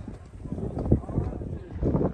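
Footsteps of a hiker climbing stairs, about one heavy step a second, with people talking nearby.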